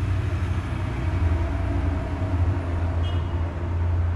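A steady low rumble of background noise, with faint steady tones above it and no speech.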